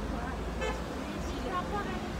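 City street ambience: a steady rumble of road traffic with faint voices of passers-by.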